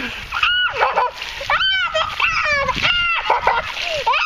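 Water poured from a bucket splashing down over a child's head and onto the ground, with the child giving several short high-pitched squeals at the cold water.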